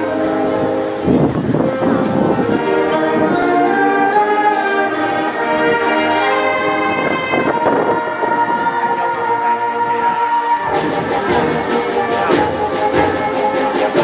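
Elementary-school concert band playing sustained chords on brass and woodwinds. About eleven seconds in, the low brass fills out and percussion strokes join.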